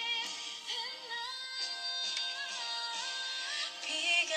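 A woman singing a song over backing music, heard through a phone's speaker, so it sounds thin with no bass.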